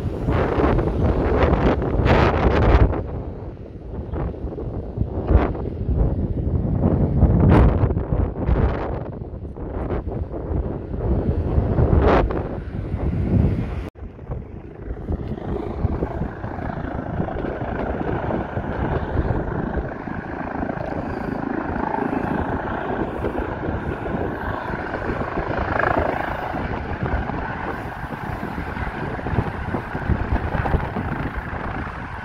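Wind buffeting the microphone in irregular gusts. After a break about 14 seconds in, a steady mechanical drone with a faint high whine, from a hovering rescue helicopter.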